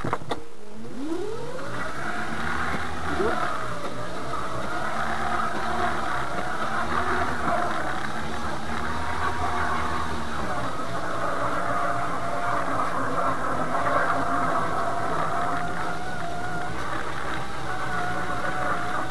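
Electric drive motor of a Puli microcar whining as it pulls away uphill on snow: the whine rises in pitch over the first couple of seconds, then holds with small wavers and settles slightly lower about halfway through.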